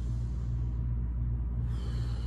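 Steady low hum and rumble of background room noise in a large gym.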